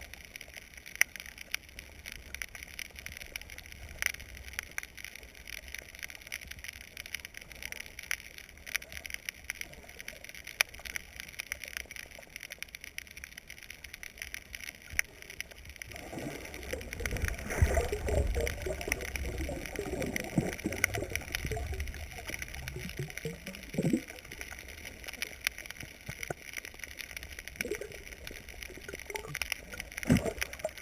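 Underwater sound from a camera submerged over a reef: a steady crackle of scattered sharp clicks, with a stretch of louder gurgling water movement from about halfway through that fades out a few seconds later.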